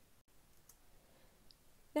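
Near silence: faint room tone, with a brief drop to dead silence near the start and one small, faint click about a second and a half in.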